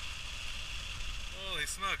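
Wind rushing over an action camera's microphone in paragliding flight, with a steady high hiss. A person's voice calls out briefly near the end.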